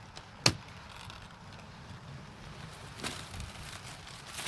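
Dry corn stalks and leaves rustling and crackling as someone pushes and crawls through them, with one sharp snap about half a second in and a softer one near three seconds.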